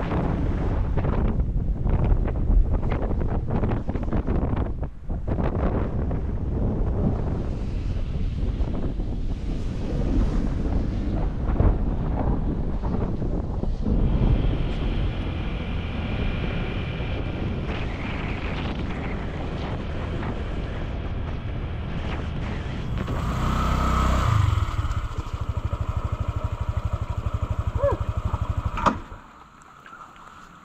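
Honda motor scooter being ridden, its engine under heavy wind buffeting on the microphone. Near the end the scooter slows to a steady idle, and then the engine is switched off and the sound drops away suddenly.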